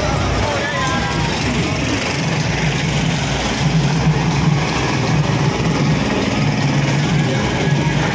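Loud music with heavy bass from a truck-mounted DJ sound system, mixed with crowd voices.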